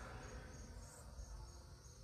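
Faint crickets chirping outdoors in a repeating series of short high pulses, over a low background hum.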